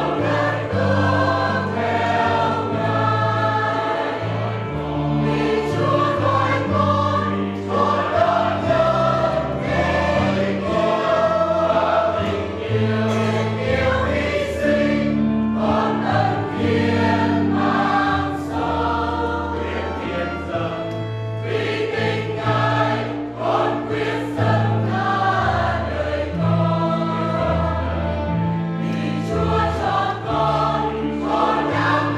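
A choir singing a hymn over sustained low accompanying notes that change every second or two.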